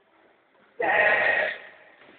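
A person in the gym shouts once, loudly, for under a second, starting about a second in.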